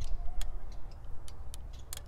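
A handful of short sharp clicks, about five spread unevenly over two seconds, over a steady low rumble.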